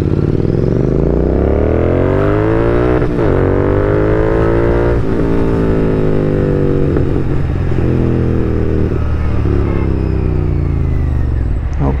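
Royal Enfield Continental GT 650 parallel-twin engine and exhaust under way, climbing in pitch through two upshifts about three and five seconds in, then holding a steady cruise and easing off near the end. The bike is being test-ridden with a damaged catalytic converter, just after debris was pulled from the exhaust.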